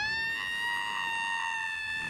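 One long, high-pitched wail of pain, rising sharply at the onset and then held steady. It is the Rottweiler's cry as a wax strip is ripped off in a bikini-wax gag.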